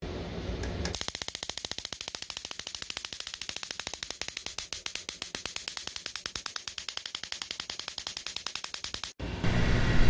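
Electric spark from a 40,000-volt supply repeatedly jumping the small gap between two wire ends: a fast, even train of sharp snaps that starts about a second in and stops abruptly near the end.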